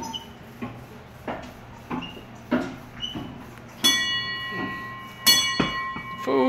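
Small brass ship's bell struck twice with its clapper rope, about a second and a half apart; each strike rings on with a clear steady tone. A few soft taps come before the first strike.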